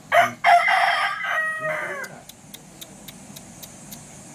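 Rooster crowing once: a short opening note, then one long call that falls in pitch at its end, about two seconds in all.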